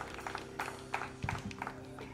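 Scattered hand clapping from a small group: irregular single claps, several a second, thinning out.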